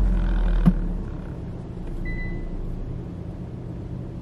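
Low rumble inside a car cabin, strongest in the first second, with a single click just before a second in, then settling to a quieter steady hum; a short faint high beep sounds about two seconds in.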